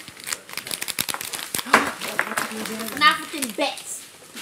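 Plastic lollipop wrappers crinkling as they are unwrapped: a rapid, irregular run of small crackles, with a few words spoken near the end.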